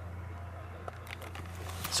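Steady low hum of a BMW SUV's engine idling, heard inside the cabin, with a few faint clicks and rustles.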